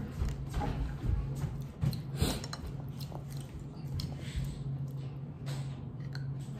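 Small clicks and knocks of eating at a table, a plastic spoon in a yogurt cup and chewing, over a steady low hum; one sharper click about two seconds in.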